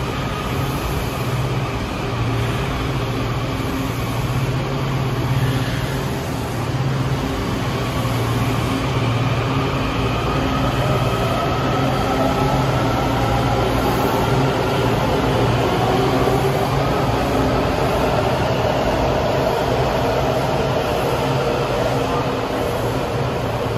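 Washington Metro train pulling out of an underground station: a steady low hum, then from about ten seconds in the traction motors' whine rising in pitch as it gathers speed.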